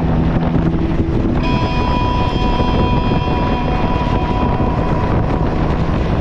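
Motorcycle engine running at cruising speed with wind rushing over the microphone. A steady high tone sounds from about a second and a half in until near the end.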